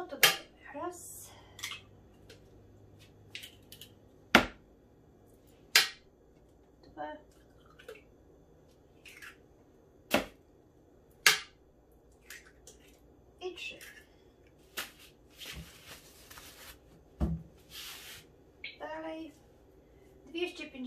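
Eggs being cracked into a Thermomix bowl: sharp taps of shell on the rim, in pairs a second or so apart, with a brief rustle of handling near the end.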